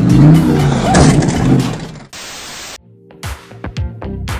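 A C8 Corvette's V8 revving hard with tyres squealing, over background music. It cuts off about two seconds in, followed by a brief steady hiss and then music with a beat.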